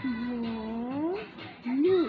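Two drawn-out vocal calls: a long one held low that rises in pitch at its end, then a shorter, louder one that rises and falls near the end.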